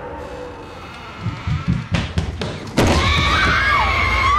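Horror-film jump-scare sound: a quiet hush and a few low thuds, then near three seconds in a sudden loud sting, a shrill wavering shriek over a deep rumble.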